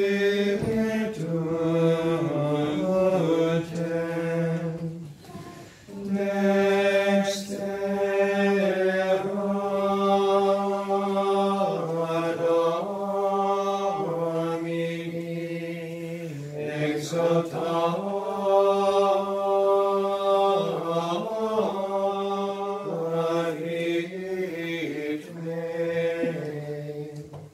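Choir singing a slow sacred chant with long held notes that move in small steps, with a brief break for breath about six seconds in.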